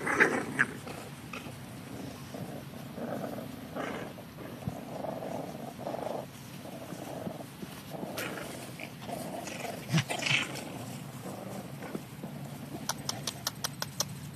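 English bulldog puppies, seven weeks old, play-fighting and growling, loudest right at the start and again about ten seconds in. A run of quick clicks follows near the end.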